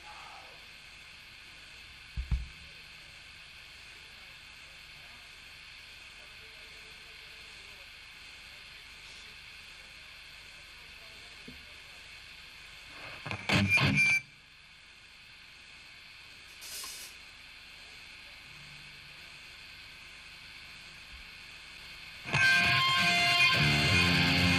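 Steady amplifier hum and hiss from a metal band's stage rig between songs, broken by a low thump a couple of seconds in and a loud burst of electric guitar about 13 seconds in. A little over 22 seconds in, distorted electric guitar and bass come in loudly and keep going as the next death-metal song starts.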